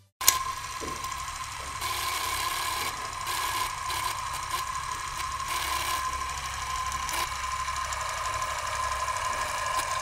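Film projector sound effect: a click, then a steady mechanical whirring rattle with a thin constant whine.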